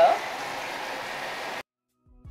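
Steady, even hiss, cut off abruptly about a second and a half in.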